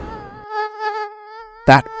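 A mosquito's wingbeat buzz: a steady, thin whine with a slight waver in pitch, likely from a female mosquito.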